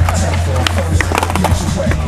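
Skateboard rolling on pavement, with a cluster of sharp clacks about a second in. Background music with a steady bass runs underneath, and there is laughter.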